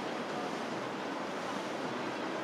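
Steady rushing of churned water and wind noise on the microphone as a boat moves through the river, with no distinct engine tone standing out.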